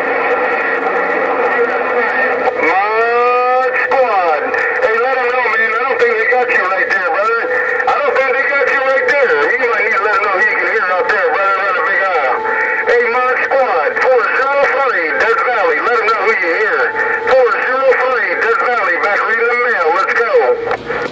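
Radio voices coming over a President HR2510 transceiver's speaker, garbled and hard to make out, with several stations overlapping. Steady whistle tones (heterodynes) run under the talk.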